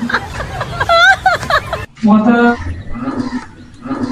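A person's voice making wordless sounds with wavering pitch, cut off abruptly just under halfway through, after which short voiced sounds from another take follow.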